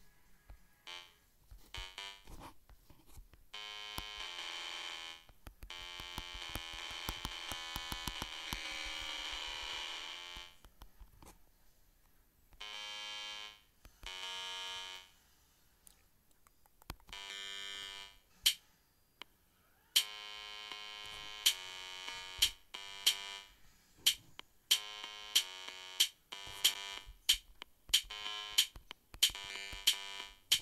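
Chrome Music Lab Song Maker playing synthesizer notes through a tablet speaker: short electronic tones that start and stop, some held for a few seconds. From about two-thirds of the way through, a regular beat of sharp electronic drum clicks runs under the synth notes.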